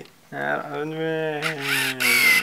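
A person's voice drawing out one long, wordless sound, held with a gently wavering pitch for over a second. It ends in a short burst of breath near the end.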